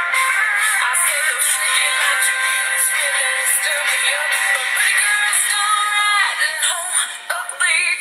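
A recorded song playing: a singer's voice carrying a melody over instrumental backing, with a brief break in the sound near the end.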